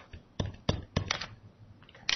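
Plastic stylus tapping and clicking on a tablet PC screen during handwriting: a series of short, sharp taps spread across the two seconds.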